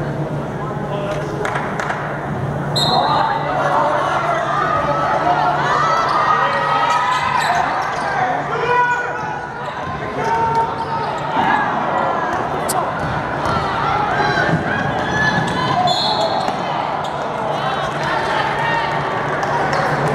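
Basketball bouncing on a hardwood gym court during play, amid crowd and bench voices, with two brief high-pitched sounds, one a few seconds in and one past the middle.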